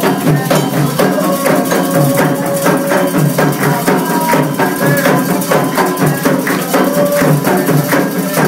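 Candomblé atabaque drums played in a fast, steady rhythm for the orixá Ogum's dance, with a metal bell ringing and voices singing over the beat.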